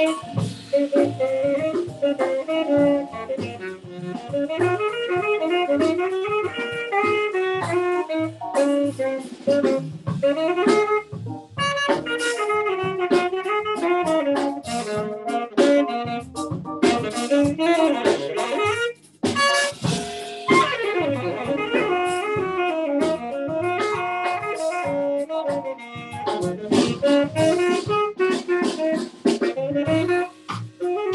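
Live small-group jazz: a saxophone playing a fast, running solo line over walking bass and drum kit, with a brief break in the line about two-thirds of the way through.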